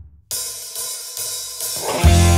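Drum-kit cymbals and hi-hat ringing bright and hissy, starting suddenly about a third of a second in after a brief silence and swelling near the end, as the opening of a rock song.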